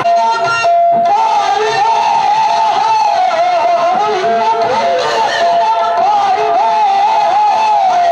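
Live qawwali music: one steady held note, typical of a harmonium drone, under a wavering, ornamented melody line. The melody drops out for a moment in the first second and then resumes.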